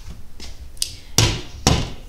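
Glass-fronted kitchen cabinet door being handled: a light click, then two sharp knocks about half a second apart.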